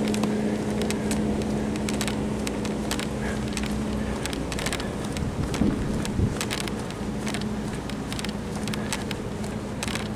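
A steady low hum over a rumbling background, dropping out for a few seconds in the middle, with light clicks throughout and two low thumps a little past halfway.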